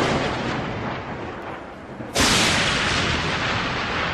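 Loud booming crash sound effects with a thunder-like rumble. The first fades out over the opening two seconds, then a second sudden crash hits about two seconds in and slowly dies away.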